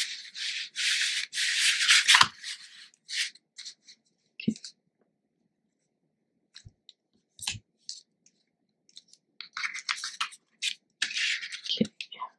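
Sheets of cardstock sliding and rubbing against each other and the cutting mat as they are handled and turned over, rustling for the first two seconds and again near the end, with a few light taps in between.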